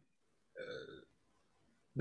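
Near silence broken once, a little after the start, by a short, faint vocal sound from a person, lasting about half a second.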